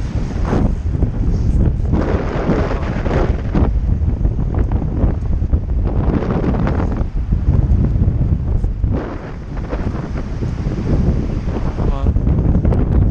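Heavy wind buffeting the camera microphone, a loud low rumble that surges and eases in gusts.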